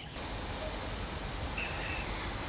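Steady, even hiss of background noise with no speech, and a faint brief high tone near the end.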